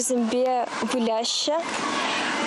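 A young woman talking in an outdoor interview, her voice close to the microphone, with a faint steady background hiss between syllables.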